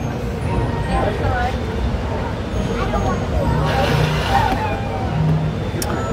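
Background chatter of people at nearby tables over a steady low rumble, with no voice close to the microphone.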